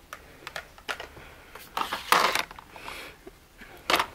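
Plastic makeup pens and tubes clicking and rattling against each other as a hand rummages through a plastic storage drawer, with a louder clatter about two seconds in.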